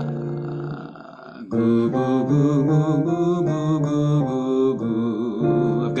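A low man's voice singing a short phrase of held notes with vibrato, stepping between pitches. A sustained keyboard note fades out during the first second, before the singing starts.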